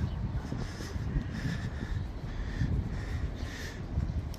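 A crow cawing several times at a distance, over a steady low outdoor rumble of wind and city traffic.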